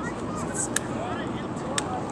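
Distant players' voices calling out across the pitch over a steady hiss, with two sharp clicks: one under a second in and one near the end.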